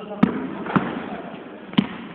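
A basketball bouncing on a wooden sports-hall floor: three sharp bounces, the first two about half a second apart and the third about a second later, ringing briefly in the hall.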